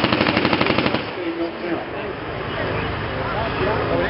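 A rapid burst of machine-gun fire with blank rounds, about a dozen shots a second, stopping about a second in. A low, steady rumble carries on underneath.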